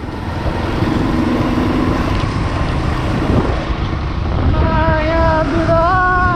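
Motorcycle running along a road, with wind buffeting the microphone in a steady loud rumble. From about two-thirds of the way in, a drawn-out pitched sound joins, held in steady notes that bend near the end.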